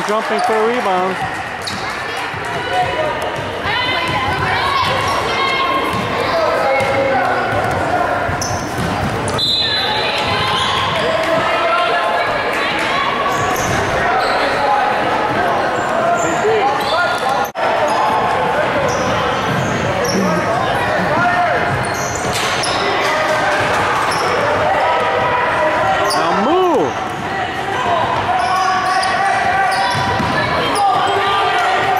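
Basketball game on a hardwood gym court: the ball bouncing and players' shoes on the floor amid continuous voices of players and spectators calling out, all echoing in the large gym.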